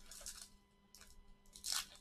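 Trading-card pack wrapper being torn open and crinkled by hand, in a few short rustles, the loudest near the end.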